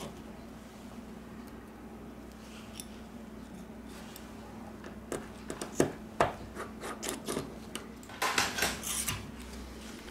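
Small clicks and light scraping of a precision screwdriver working on the screws of a smartphone's internal frame, with a few sharper clicks about halfway through and a quick cluster of them near the end.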